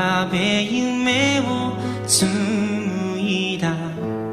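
A slow Japanese pop ballad playing, a male singer holding long, wavering notes over a steady accompaniment.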